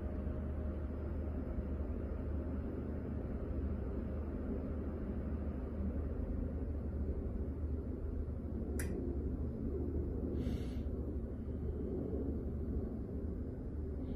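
Steady low hum of a generator running, with one sharp click about nine seconds in and a brief hiss shortly after.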